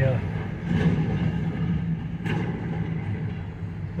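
Steady low engine hum at idle, heard from inside a vehicle's cabin while freight boxcars move past.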